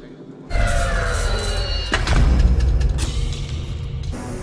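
Sci-fi film sound effects of a turbolift racing through its shaft. About half a second in, a loud deep rumble starts with falling whooshing tones, and sharp thuds land near two and three seconds, over background music.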